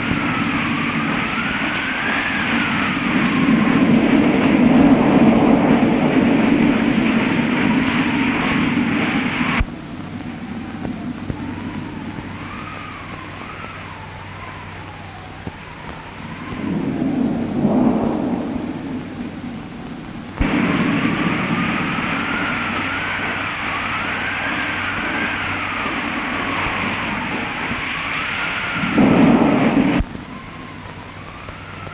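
Storm wind howling: a wavering whistle that rises and falls over a rushing noise with a low rumble. About ten seconds in it drops suddenly to a quieter howl, swells briefly, then comes back at full strength about twenty seconds in, with another surge near the end.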